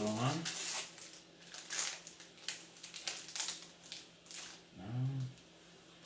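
Foil booster pack wrapper being torn and peeled open by hand, a rapid, irregular run of crinkles and crackles that dies down about four and a half seconds in.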